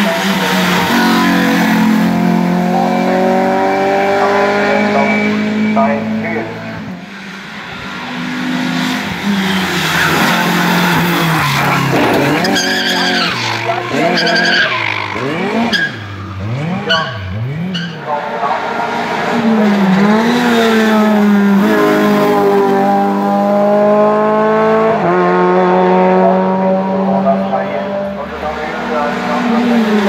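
Four-cylinder Renault Clio Cup race cars accelerating hard past one after another on a hillclimb, the engine note climbing and dropping back at each upshift. The sound dips briefly about seven seconds in, between cars, and gets tangled in the middle as cars pass close.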